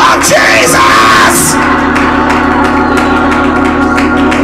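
Church music: sustained keyboard chords with drums and cymbals keeping a beat, and a voice yelling out over it in the first second or so.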